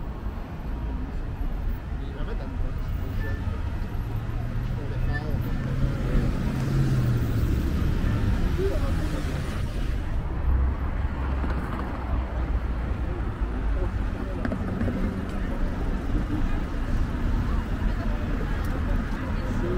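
Downtown street traffic: a steady rumble of car engines and tyres. One vehicle's engine rises in pitch between about four and seven seconds in, then fades.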